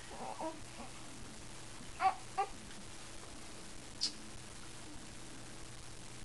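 A baby making a few short coos and babbling sounds: one just after the start, two about two seconds in, and a brief high squeak about four seconds in.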